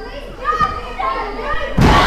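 Children and other spectators shouting at ringside, then a loud thud of a wrestler's body hitting the ring canvas near the end, with high-pitched crowd voices rising right after it.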